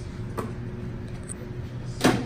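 Frisbee being caught by hand: a sharp slap about half a second in and another, louder one at the end, over a steady room hum.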